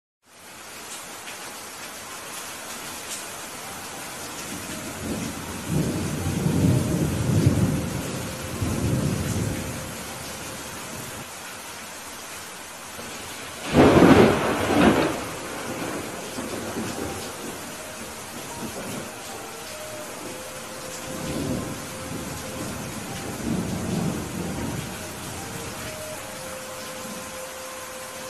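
Heavy rain falling steadily, with thunder rolling low several times. A sharper, louder thunderclap about halfway through is the loudest sound, and softer rumbles follow near the end.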